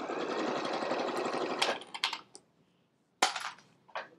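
Juki sewing machine stitching a seam through layered fabric at speed for about two seconds, then stopping. A short clack follows about three seconds in.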